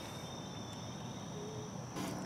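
Insects trilling steadily in the grass, a faint, high-pitched, unbroken sound over quiet outdoor background.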